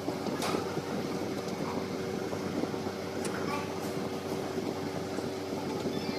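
A steady machine hum with a few faint ticks.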